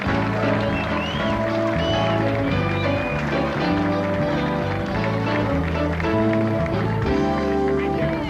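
Walk-on music from a TV show band, a bass line stepping from note to note under higher held parts.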